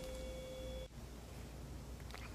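A faint, steady, pure-sounding tone held for just under a second, then cut off abruptly, leaving low room tone.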